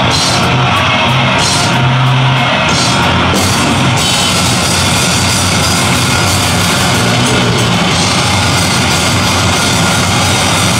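Loud live heavy band: distorted electric guitar over a drum kit. The cymbals strike in a pulsing rhythm at first, then about four seconds in they wash continuously.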